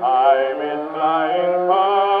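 Music from a 1925 Victor 78 rpm record playing through a cabinet phonograph: a slow ballad melody with vibrato over accompaniment, changing note about a third of a second in and again near the end. The sound has no high treble, like an early recording.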